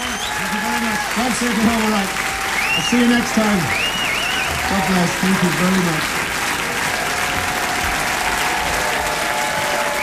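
Audience applauding, with voices calling out over the clapping and one voice saying "nice" about halfway through.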